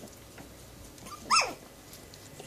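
A nursing puppy gives one short, loud yelp a little past halfway, its pitch falling quickly.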